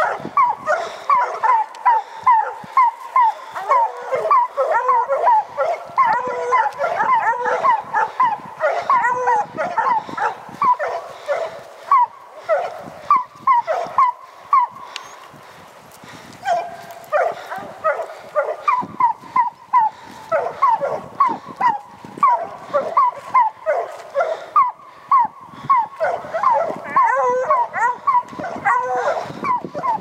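Several hunting hounds baying in rapid, repeated calls while working the fresh scent of a bear. The calls ease off briefly about halfway through, then pick up again.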